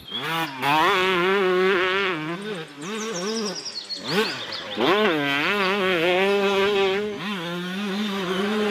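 Dirt bike engine revving, its pitch rising and falling repeatedly as the throttle is worked, with a brief drop about four seconds in before it climbs again.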